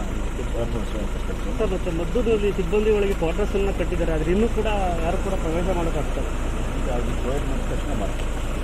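A man speaking, over the steady low rumble of an idling car engine.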